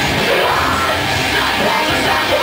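Live metal/hardcore band playing loud and steady, drums and guitars with a vocalist yelling into the microphone over them.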